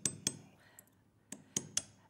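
Hammer striking a dapping punch seated in a steel dapping block on a steel bench block, doming a piece of thin silver sheet: four sharp metallic taps, one early on its own, then three in quick succession near the end.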